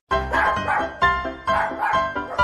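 Background music with several puppies barking over it.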